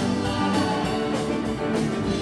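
Live band playing: hollow-body electric guitar, a second electric guitar, bass and hand-played conga, with a steady beat.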